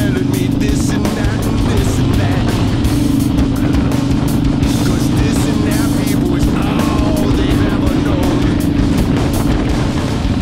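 Ironhead Harley-Davidson Sportster V-twin running steadily at road speed, with wind buffeting the microphone. Music plays over it.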